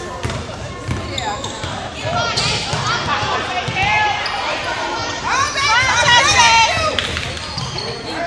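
A basketball bouncing on a hardwood gym floor as it is dribbled up the court, in the echoing space of a gymnasium. Spectators shout and call out over it, loudest about two-thirds of the way through.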